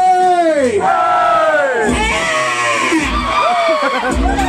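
A man's voice through a PA, yelling long drawn-out cries into a microphone. There are about four of them, each falling in pitch, with crowd noise beneath.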